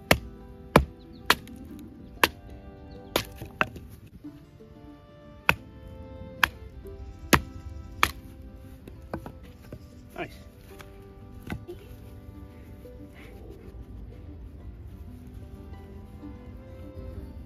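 A survival knife being batoned through a standing wood round: a series of sharp knocks as the baton strikes the blade's spine, closely spaced in the first few seconds, then sparser and fainter as the wood splits.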